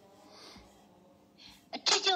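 Low room tone with a short, breathy burst of noise about a second and a half in. A voice starts speaking loudly just before the end.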